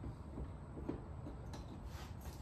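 Faint clicks and handling noise of a large keyed power-cord plug being fitted into a home transfer box's generator inlet, over a low steady background hum.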